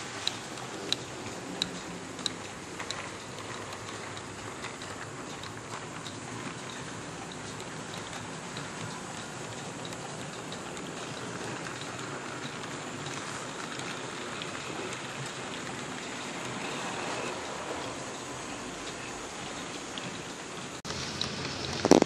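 OO gauge Heljan Class 14 model diesel locomotive running around a model railway layout: a steady rumble of wheels and motor on the track, with sharp clicks about once a second over the first few seconds. A sudden louder knock comes near the end.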